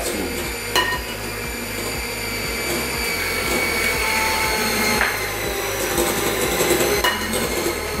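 Electric hand mixer running on its lowest speed, its beaters whirring through thick cream cheese in a glass bowl as it is mixed into a cheesecake batter. A few sharp knocks cut in, about a second in and again later.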